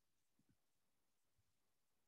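Near silence: a pause with no audible sound.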